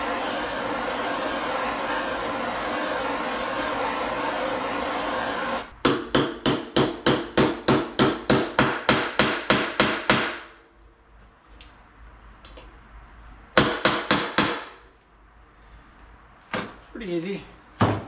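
Hammer blows driving a sealed wheel bearing into a motorcycle wheel hub through a driver: a quick, even run of about four strikes a second for some four seconds, then a few more strikes a little later. They follow about six seconds of steady rushing noise.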